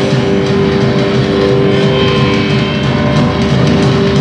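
Rock band playing live and loud: distorted electric guitars through Marshall amplifiers, with bass and steady drum hits.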